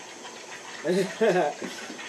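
A man's voice, briefly, about a second in. Behind it is a steady, low watery hiss from the aquarium.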